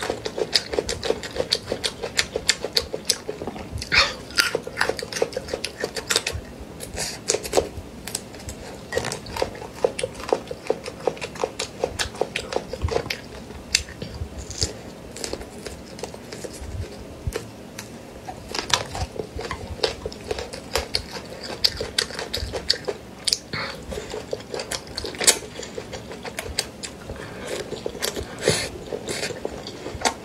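Close-miked chewing and crunching of chili-sauced green beans, a steady run of small crisp crackles and wet mouth sounds.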